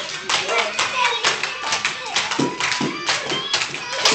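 A group of children clapping their hands in scattered, uneven claps, with children's voices and background music underneath.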